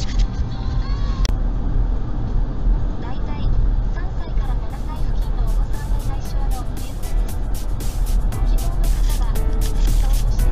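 Steady low road and engine rumble inside a moving car, under music with a singing voice. From about halfway through, a run of sharp clicking beats joins the music.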